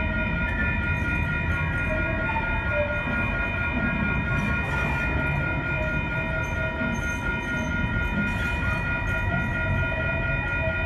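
METRO Blue Line light rail trains rolling past at low speed, a steady low rumble throughout, with several steady high tones sounding over it.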